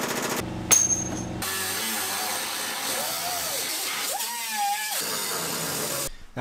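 A pneumatic cutting tool grinding into the rusted sheet-metal cab floor, making a steady high whine whose pitch dips and recovers a couple of times as it bites into the metal. A brief fast rattle comes first.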